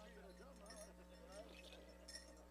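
Near silence: a faint murmur of distant voices in a large arena over a steady electrical hum, with a few faint high clicks.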